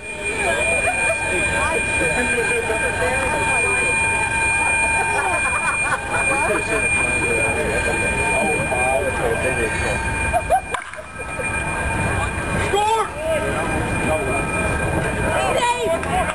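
Indistinct chatter of people talking, with a low rumble and a thin, steady high whine behind it.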